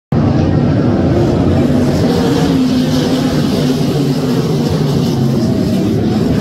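Several open-wheel dirt-track race cars running at speed on the oval, a loud, steady engine drone with a slightly wavering pitch.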